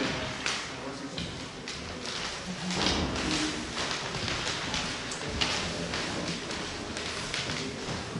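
Indistinct chatter of people talking in a large room, with scattered clicks and knocks.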